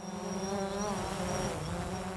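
Quadcopter drone hovering: the steady buzz of its electric motors and propellers, dipping slightly in pitch about one and a half seconds in.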